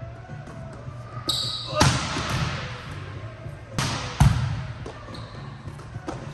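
Volleyballs being hit and bouncing on a hard indoor court: sharp smacks about two seconds in and a close pair near four seconds, each ringing briefly in the large hall.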